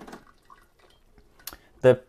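Mostly quiet, with a single short, sharp click about one and a half seconds in.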